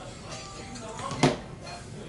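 Mobile phone ringing with a musical ringtone, just before the call is answered. A single sharp knock about a second in.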